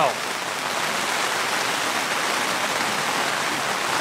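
Wind-driven rain beating on tent fabric, heard from inside the tent as a steady, even hiss.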